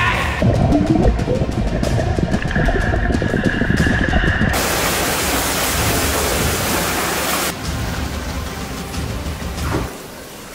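A comic fart sound effect: a long, low, rasping blast, followed by about three seconds of loud rushing hiss like a jet of spray. Both play over background music, and the sound drops away over the last couple of seconds.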